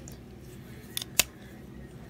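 Folding knife blade being opened by hand: two sharp metallic clicks about a fifth of a second apart, the second louder, over faint handling.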